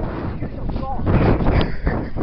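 Wind buffeting a phone's microphone in irregular low rumbling gusts, with handling noise as the phone is swung about and people's voices under it.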